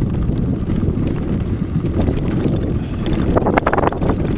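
Wind buffeting the microphone of an action camera moving fast along a rough dirt trail, a steady loud rumble mixed with jolts from the ground. A quick cluster of sharp rattling clicks comes near the end.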